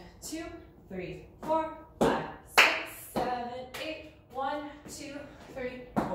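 A woman counts dance beats aloud while dancing in cowboy boots on a tile floor. Two sharp hand claps come about two seconds in, a little over half a second apart.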